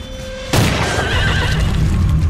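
A sudden loud hit about half a second in, followed by a horse whinnying in a wavering call, over low background music.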